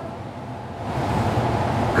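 A pause in speech filled with steady background hiss, the room noise of a large hall, a little louder low down in the second half.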